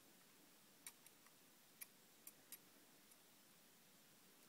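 Faint metal clicks from a We R Memory Keepers Crop-A-Dile hole punch being adjusted by hand, a handful of small clicks over the first few seconds against near silence.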